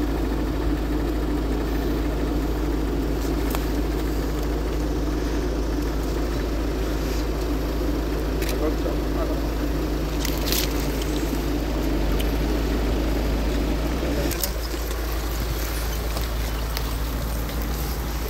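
Steady outdoor ambience: a continuous low rumble under an indistinct murmur of several people talking. The murmur and rumble ease slightly about fourteen seconds in.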